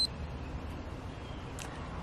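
A short, high-pitched electronic beep right at the start from a Keto-Mojo blood glucose meter as its reading comes up, followed by a faint steady low background hum.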